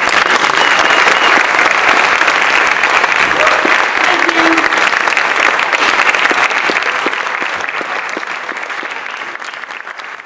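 Audience applause that breaks out all at once right after the song ends, loud and dense at first, then dying away over the last few seconds.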